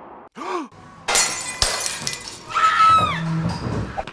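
Edited sound effects: a short arched tone, then a sudden crash about a second in that sounds like shattering, followed by a few short falling glides.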